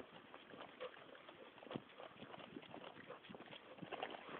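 Faint footsteps of a person and a leashed dog walking on brick paving: irregular light clicks and scuffs.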